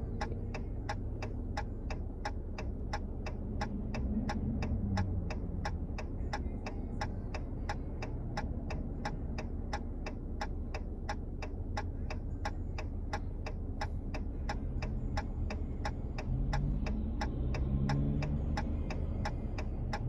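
Car turn-signal indicator clicking steadily, about three clicks a second, over the low hum of the car's cabin.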